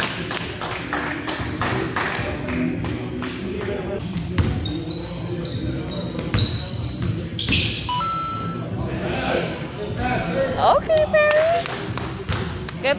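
A basketball bouncing on a gym floor as it is dribbled up the court, with short high squeaks of sneakers on the floor and players' voices calling out across the gym.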